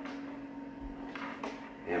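Quiet room with a steady low hum, and two faint clicks about a second and a quarter in as a power adapter and its cord are handled.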